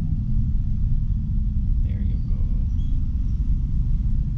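Steady low rumble of a car's engine and road noise heard from inside the cabin as the car creeps forward in slow traffic.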